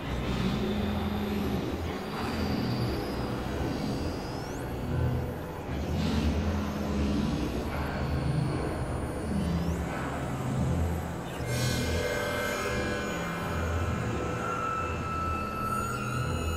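Experimental electronic drone music: a low, wavering synthesizer rumble with thin high tones, a few of them sweeping upward, and a cluster of steady higher tones coming in about two-thirds of the way through.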